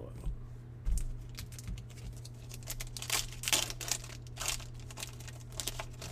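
Foil wrapper of a trading-card pack crinkling and tearing as it is opened, in a string of short rustles through the second half, after a soft thump about a second in. A steady low hum runs underneath.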